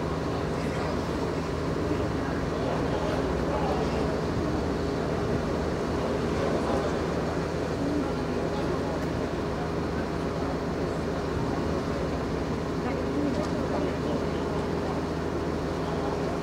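Fire truck's diesel engine running steadily with the aerial ladder's platform raised, a constant low drone, with indistinct voices over it.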